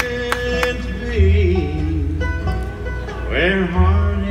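Live bluegrass band playing an instrumental break: a fiddle carries the melody with a held note and sliding, bending phrases over acoustic guitar, banjo and upright bass.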